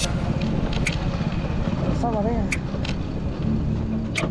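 Hero motorcycle's single-cylinder engine running at low speed over a dirt track, with a few sharp ticks and rattles.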